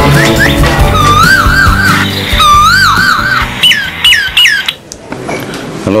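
Mobile phone ringing with an electronic ringtone: warbling trills, then a run of four quick falling chirps, over the tail of background music that fades in the first couple of seconds.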